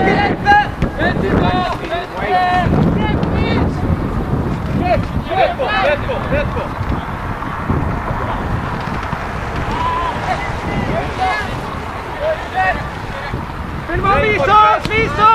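Scattered voices calling out across an open football pitch, mixed with wind rumbling on the microphone.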